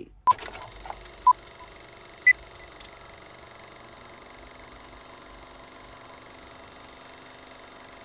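Three short electronic beeps about a second apart, the last one higher in pitch, followed by a steady faint hum.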